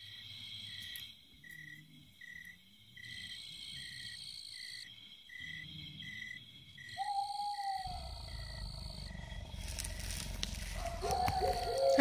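Night ambience of crickets chirping steadily, about two chirps a second, over a continuous high insect trill. A single long hoot comes about seven seconds in, and a low rumble rises from about eight seconds on.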